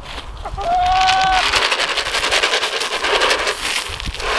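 Chicken feed poured out and scattering onto the ground: a dense, rapid crackling patter from about a second and a half in. Just before it, one of the chickens gives a short single-pitched call.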